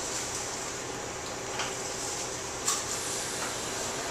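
Steady room hiss between narration, with a light click of stems or foliage being handled about two and a half seconds in.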